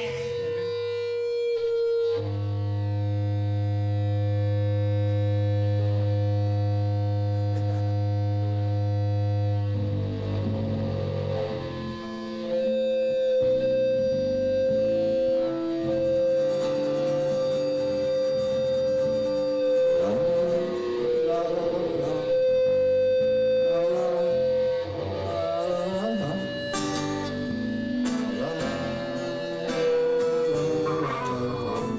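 Instrumental music with guitar: a low chord held steady for several seconds, then a long sustained high note carrying a slow melody over plucked guitar notes.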